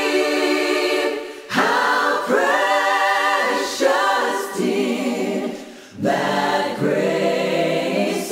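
Unaccompanied choir singing slow phrases in harmony. A held chord dies away about a second in, with fresh phrases starting at about a second and a half and again at six seconds.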